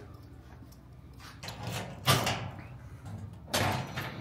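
Steel lateral file cabinet being unlocked with its key and a drawer worked: about four short metal rattling, sliding sounds, the loudest about two seconds in.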